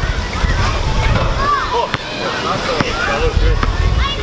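Indistinct background voices with a steady rumble of wind on the microphone, and a few sharp knocks about two and three seconds in.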